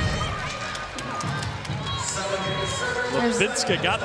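Indoor arena crowd noise with music playing over it, and a voice near the end.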